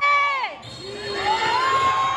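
Crowd shouting and cheering. A loud yell at the start falls in pitch, then a long shout rises and holds steady over the noise of many voices.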